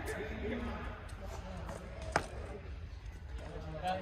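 One sharp pop of a pickleball about two seconds in, over faint voices and chatter.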